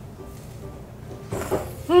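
Cold noodles slurped into the mouth: a short sucking slurp about a second and a half in, over faint background music.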